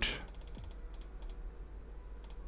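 A few faint computer keyboard keystrokes and clicks, in two short clusters about half a second and about a second in, as a value is entered into a field.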